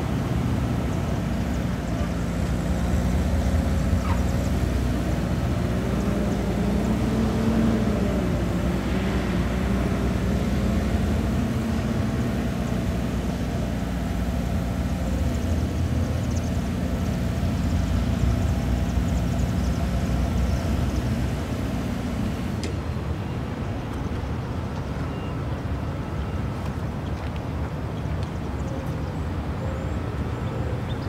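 Steady low engine hum, with a faint wavering tone partway through. The sound changes suddenly about two-thirds of the way in, losing its higher hiss.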